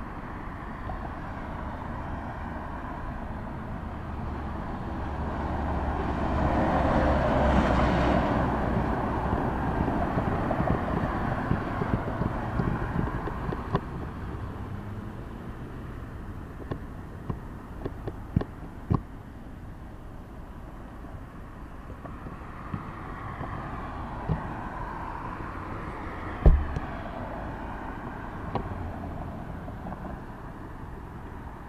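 Road traffic at an intersection: a vehicle passes, its noise swelling and fading over several seconds about a quarter of the way in, and a fainter one passes later over a steady low rumble. Scattered light clicks, and a single sharp knock near the end is the loudest sound.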